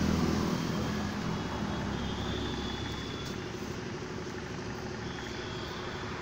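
Steady motor-vehicle engine and traffic noise.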